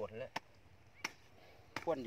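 A short-handled metal spade chopping into hard, dry soil: two sharp strikes about two-thirds of a second apart.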